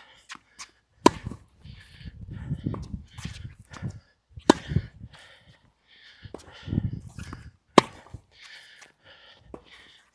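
Tennis rally: a racket strung with Tourna Big Hitter Silver 7 Tour seven-sided polyester at 50 pounds strikes the ball with a sharp pop three times, about three and a half seconds apart. Fainter hits and ball bounces come between them, with shoes shuffling on the court.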